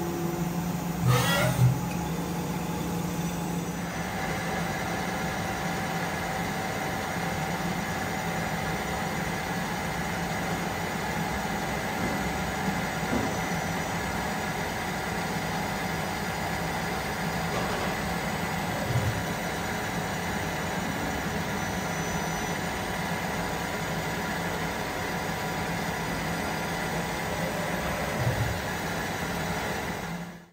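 Miyano BNE-51SY CNC lathe running: a steady machine hum, with a rising whine about a second in and a higher steady whine joining after about four seconds. A few single clunks now and then.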